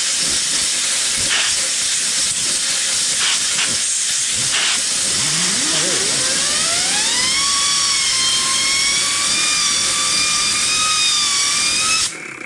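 A compressed-air blow gun hisses as it blasts the gear on the Stover Duro engine's shaft. The air spins the gear up, so a whine rises from about five seconds in and then holds steady until the air cuts off at the end. The gear spins freely on its shaft with hardly any play.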